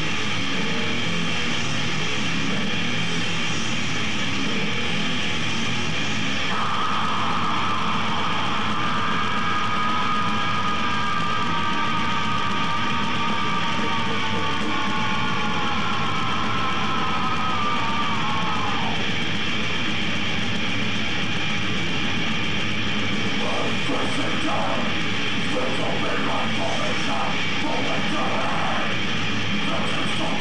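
Death metal band playing live: heavily distorted electric guitars, bass and drums in a dense, unbroken wall of sound, with vocals. A long held high note runs from about six seconds in to nearly twenty seconds, sliding down at its end.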